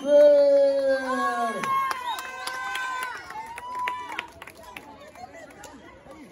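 Wrestling-show crowd shouting: a long drawn-out shout over the first couple of seconds, then higher held cries and a few sharp cracks. After about four seconds it dies down to a low murmur.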